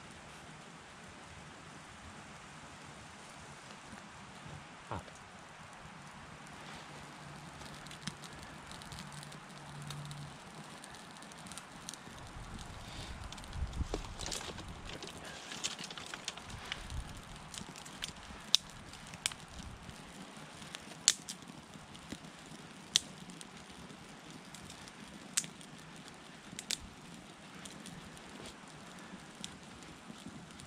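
Small kindling fire of twigs and dry grass crackling as it catches. There is a burst of crackles about halfway through, then single sharp pops every couple of seconds over a steady background hiss.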